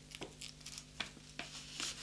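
Faint rustling of a paper dress pattern with a few soft, scattered clicks as a paper strap is pressed and taped onto a doll's shoulder; the crinkling thickens briefly near the end.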